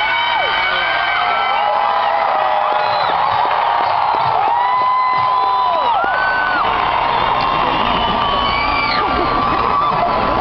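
Large concert crowd cheering and screaming, many high voices whooping over one another in a steady loud din.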